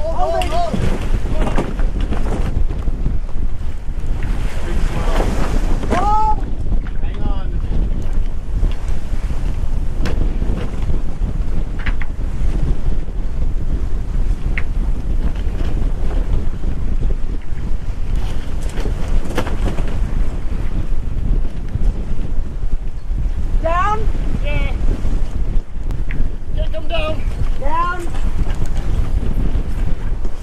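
Strong wind buffeting the microphone at sea: a loud, steady rumbling rush, broken a few times by brief distant calls.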